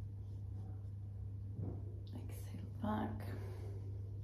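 A woman breathing audibly, with a breathy, partly voiced exhale about three seconds in, over a steady low hum.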